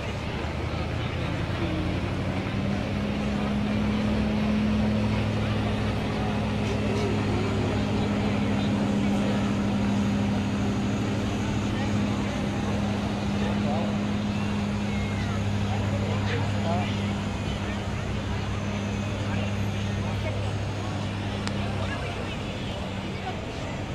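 Ice resurfacer running as it drives over the rink, a steady low drone that grows stronger a couple of seconds in, with crowd chatter throughout.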